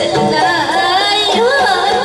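Live folk-band music in a Bhawaiya style, with a barrel drum beating under a melody whose pitch wavers and bends.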